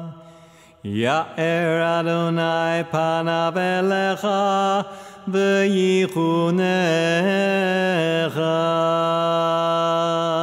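Shofar (ram's horn) blasts. A note swoops up into a held tone about a second in, then comes a run of short, broken notes, and from about eight seconds on a long, steady blast.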